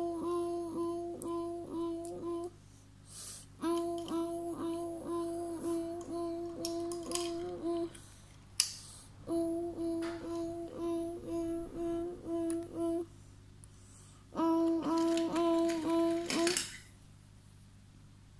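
A child's voice humming one steady note in quick, even pulses, about three or four a second, in four runs with short pauses, in play imitating a level-crossing warning bell.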